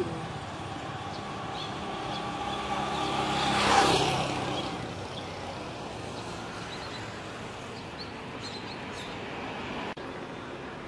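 Street traffic noise with one road vehicle passing close by, its engine sound swelling to the loudest point about four seconds in and then fading away. A few faint, short high chirps sound over the traffic.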